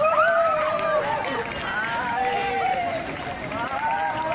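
A group of people singing together while dancing in a ring, several voices overlapping and holding long notes.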